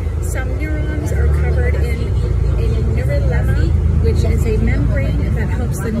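City bus running, heard from inside the cabin: a steady low engine and road rumble that grows louder about a second in, with a woman's voice over it.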